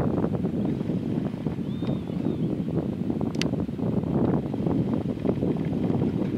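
Wind buffeting the microphone, a steady rushing noise, with a faint short bird call about two seconds in and a single sharp click near the middle.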